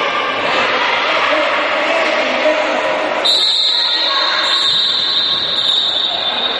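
Indistinct shouting and calling of players and spectators echoing in an indoor sports hall during a futsal game. About halfway through a high, steady whistle-like tone comes in and holds to the end.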